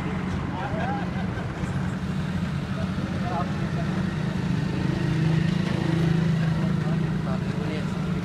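A small car engine running close by, a steady low hum that swells slightly around the middle, with faint voices in the background.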